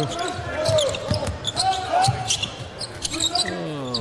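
A basketball dribbled on a hardwood court in an arena, over the steady hum of the crowd, with faint voices beneath.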